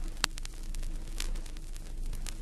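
Stylus riding the lead-in groove of a vinyl 7-inch single: surface hiss and crackle over a low steady hum, with a few sharp clicks, the loudest about a quarter second in.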